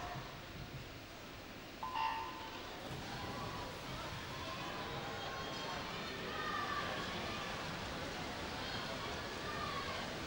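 A short electronic start beep sounds about two seconds in, setting off the race. The pool crowd then cheers and shouts steadily, with some whistles over it.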